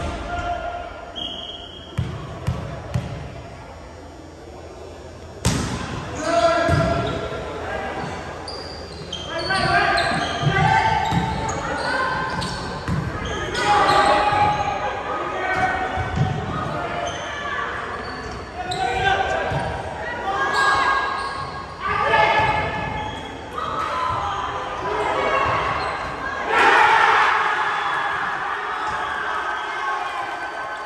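Volleyball game in a reverberant gymnasium. A ball bounces a few times on the hardwood floor and is struck hard about five seconds in. A rally of hits follows, with players shouting and calling, and a louder burst of shouting near the end.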